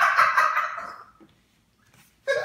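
Aerosol whipped-cream can spraying, cutting off about a second in.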